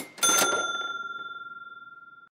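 An intro sound-effect bell. A brief crack, then a sharp metallic strike about a quarter second in, which rings one high bell note and fades steadily over about two seconds.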